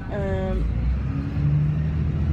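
Bus engine running with a steady low drone that grows stronger about a second and a half in. A brief falling pitched sound is heard near the start.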